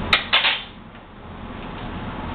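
Dishes handled on a kitchen counter: a sharp click, then a brief clatter about a third of a second in.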